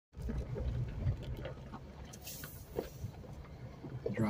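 2014 Jeep Wrangler Unlimited's 3.6-litre V6 running at low speed, heard from inside the cab as a low rumble with scattered knocks and rattles.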